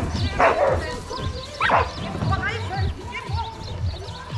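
A dog barking at an agility trial, two sharp barks in the first two seconds, in the same rhythm as the barks just before.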